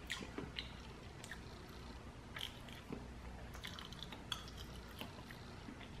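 Faint chewing and mouth sounds of a person eating a spoonful of soft soup dumpling, with small scattered clicks.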